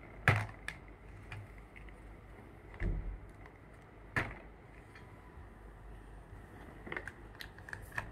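Hard plastic clicks and knocks as toy popsicle pieces are pressed into the slots of a plastic toy cart's stand: a few sharp, separate clicks spread out over several seconds, the loudest just after the start.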